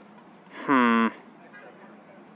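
A man's short, loud wordless vocal sound, one held low tone lasting under half a second, about a second in.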